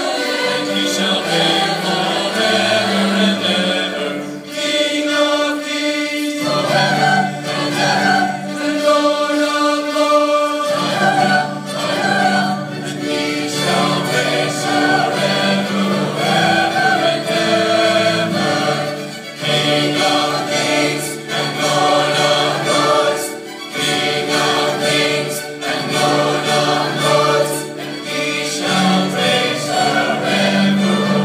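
A large choir singing a sacred choral piece, with long held chords that change pitch together.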